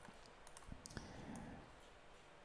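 A few faint computer mouse clicks in near silence.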